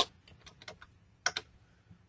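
Computer keyboard typing: a run of light key clicks in the first second, then a couple of louder clicks a little over a second in.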